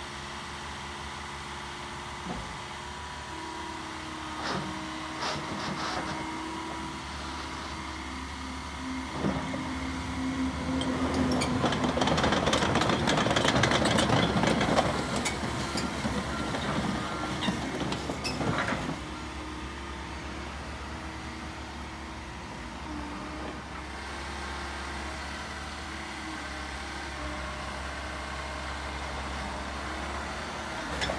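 Terex/Yanmar TC125 tracked excavator running steadily while working, with a louder, clattering stretch in the middle and a few short knocks.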